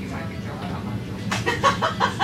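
A person's voice breaking into a quick run of short bursts, about five a second, starting a little past the middle, over a steady low hum.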